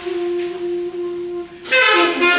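Saxophone played solo, holding one long note, then breaking into a louder, brighter phrase about one and a half seconds in.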